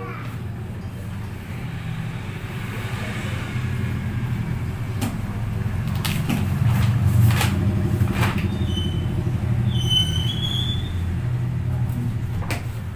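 A steady low rumble that grows louder toward the middle and eases off near the end, with a few sharp clicks and rustles of paper as record books are leafed through and lifted on a desk.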